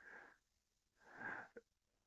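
Near silence with two faint breaths between spoken phrases: a short one at the start and a slightly louder one about a second in, followed by a tiny click.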